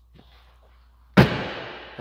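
A single sharp slam or thump a little past a second in, dying away over most of a second, over faint handling noise before it.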